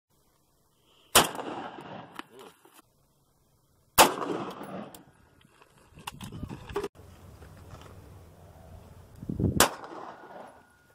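Three single gunshots, each followed by a trailing echo. The first, about a second in, is a 7.62x39 AK-47 rifle. The second, about four seconds in, is a 5.56 AR-15 rifle. The third, near the end, is a pistol.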